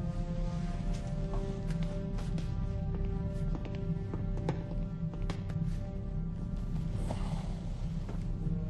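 Film soundtrack: held, sustained music notes over a steady low hum, with scattered short clicks and taps.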